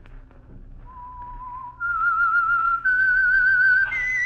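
Whistled signature theme of a 1940s radio mystery series: after about a second, a clear whistled melody begins and climbs in three held notes, each with a slight wavering vibrato. A second, higher whistled note joins right at the end.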